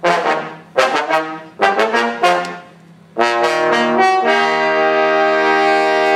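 Trombone quartet playing short accented chords, each ringing out, then a long sustained chord held from about three seconds in, changing once about a second later.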